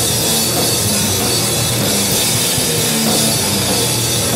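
A rock band playing live at full volume: drum kit with crashing cymbals, electric guitar and bass guitar, loud and unbroken.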